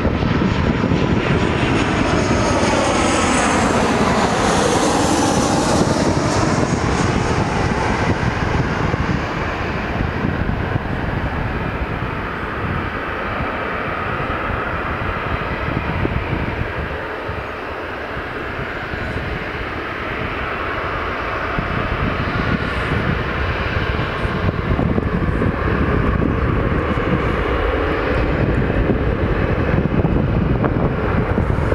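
Boeing 737 jet engines running at taxi power: a steady jet whine and rumble. In the first several seconds the tone sweeps up and down as the aircraft turns.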